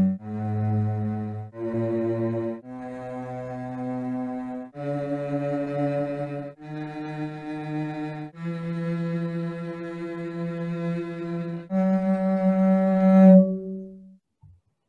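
Two minor scales on G sounded together in sustained string-like tones, rising step by step through eight held notes to the octave. One is the G minor scale tuned from harmonic string divisions; the other is the A minor scale's intervals moved down to start on G. The two are close but not identical, so some intervals clash slightly, such as 27:32 against 5:6 for the minor third.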